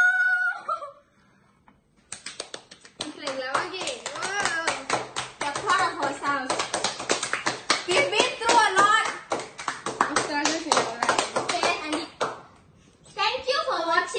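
A girl's drawn-out excited exclaim, a moment of quiet, then fast hand clapping with several girls' excited voices over it for about ten seconds, stopping shortly before the end.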